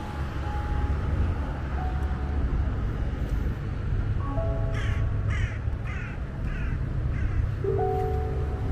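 A bird giving five short calls in quick succession about halfway through, over soft piano music and a low, steady outdoor rumble.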